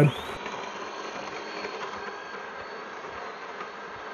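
Steady background hiss with a faint high-pitched whine: microphone room tone.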